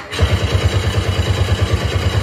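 A loud, engine-like mechanical sound effect from the dance act's soundtrack: a fast, even low throbbing of about a dozen pulses a second with a hiss over it, starting suddenly just after the start.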